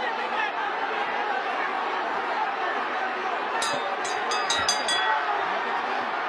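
Arena crowd chatter and hubbub around a boxing ring. A quick run of about seven sharp clicks comes from about three and a half to five seconds in.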